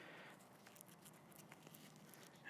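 Near silence: room tone with a few faint clicks of small items being handled.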